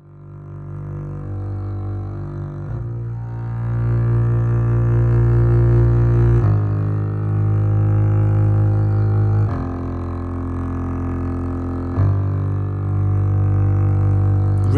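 Sampled solo strings from the Spitfire Solo Strings library playing a slow passage of long held chords, led by a solo double bass on long notes with progressive vibrato, low and raspy and close-miked. The sound swells in from quiet at the start, and the chord changes about every three seconds.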